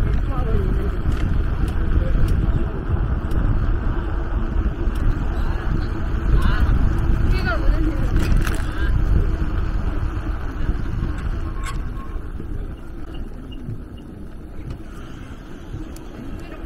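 Wind buffeting the microphone in a steady low rumble while riding a bicycle uphill, easing off near the end. Passers-by's voices come through briefly about halfway through.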